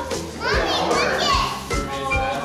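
Several young children's voices calling out excitedly, high-pitched and overlapping, from about half a second in to about a second and a half, over background music with a steady beat.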